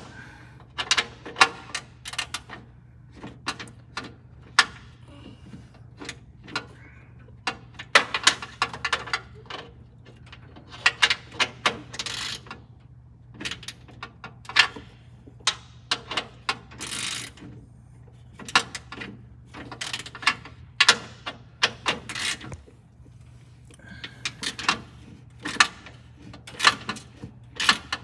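Hand tools working on metal fittings under a car's hood: irregular clicks, clinks and knocks of a wrench and hardware, coming in quick clusters with short pauses, over a steady low hum.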